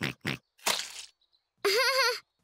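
Short laughter, then a soft squelchy splat about half a second in as a trowel-load of mortar is dropped onto the ground, followed near the end by a high-pitched cartoon child's voiced sound.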